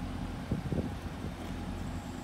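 Steady low background rumble with a few faint brief sounds about half a second in.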